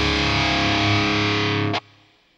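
Final held chord of a heavy metal song on distorted electric guitar, ringing steadily, then cut off abruptly near the end.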